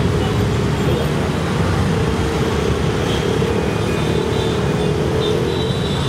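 Steady din of busy street traffic, mostly motorcycles and scooters with some cars passing close by.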